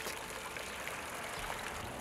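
Fountain water jets splashing steadily into a stone basin: an even, continuous patter of falling water.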